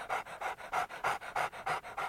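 Rapid rhythmic panting, about six short pants a second, steady throughout.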